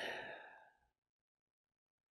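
A man's breathy exhale trailing off right after speaking, fading out in under a second, then silence.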